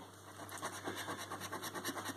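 A coin scraping the silver coating off a paper scratchcard in quick, short back-and-forth strokes, starting about a third of a second in.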